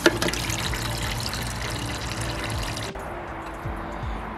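Water from a garden hose pouring and splashing into a partly filled glass aquarium tank as it fills. Just before three seconds in the splashing becomes quieter and duller.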